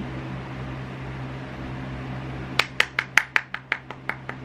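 Steady low room hum, then past halfway a quick run of light hand claps, about six a second.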